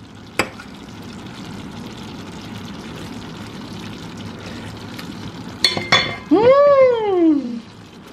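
Chicken feet sizzling steadily in a stainless-steel pan on the stove. A few clicks come near the start and again about six seconds in. Just before the end a person gives one drawn-out vocal sound that rises and then falls in pitch.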